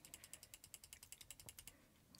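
Faint, rapid run of computer-mouse ticks, about a dozen a second, as the teleprompter scroll-speed setting is stepped up.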